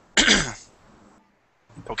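A man clears his throat once, briefly, shortly after the start, followed by near silence.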